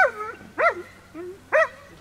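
A dog barking: three short barks in under two seconds, each rising and falling in pitch.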